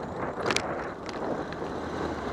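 Wind on the microphone and tyre noise from a bicycle-mounted camera while riding, with car traffic around it and one sharp rattle about half a second in.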